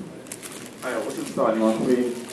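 A man's voice speaking Mandarin through a microphone, starting about a second in after a brief pause.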